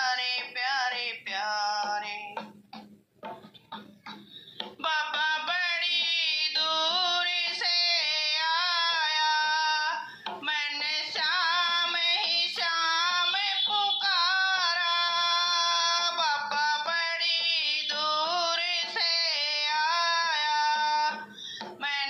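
A woman singing a Hindi devotional bhajan solo, with long held, wavering notes. She breaks off briefly near the start, then sings on.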